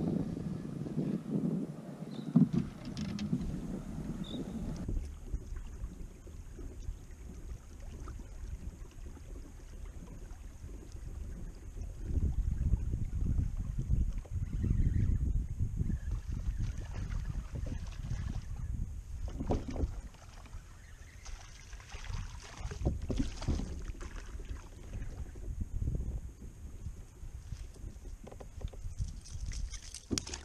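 Wind buffeting the microphone on a kayak, with scattered knocks and rattles of fishing gear being handled in the boat; a sharp knock about two seconds in is the loudest sound.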